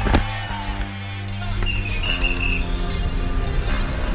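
Background music from a hip-hop track, with a sharp click at the very start and a brief high whistling tone about two seconds in.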